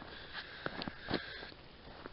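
A person sniffing and breathing through the nose, faintly, with a few small clicks.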